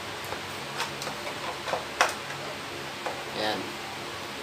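Plastic clicks and knocks as a foam soap bottle is pushed and twisted onto a pressure washer's spray gun: a handful of sharp clicks, the loudest about two seconds in.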